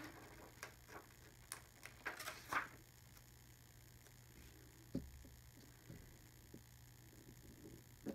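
Faint, scattered light taps and paper rustles from planner stickers being handled, busiest in the first few seconds, with a few single soft clicks later.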